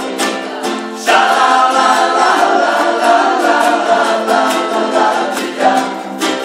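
Several ukuleles strummed in rhythm while a small group sings together into microphones; the voices swell louder about a second in.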